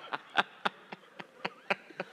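A man laughing helplessly into a close headset microphone: a run of short, breathy, wheezing bursts, about four a second, growing fainter.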